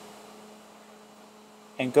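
A steady low electrical hum over faint hiss, the background noise of the recording during a pause in speech.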